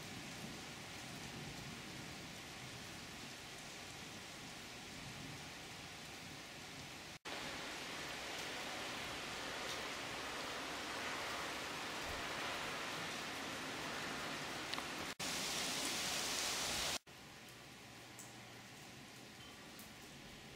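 Steady rain falling in a thunderstorm, heard as an even hiss. The sound cuts off and resumes abruptly three times where clips are joined, at a different loudness each time. It is loudest and brightest for a couple of seconds near the end.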